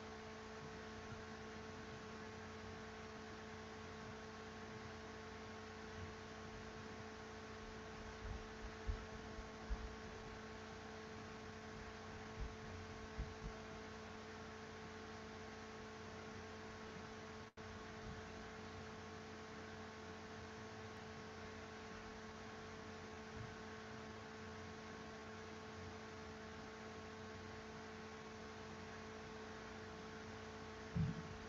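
Faint, steady electrical hum made of several steady tones, with a few soft low knocks about a third of the way in.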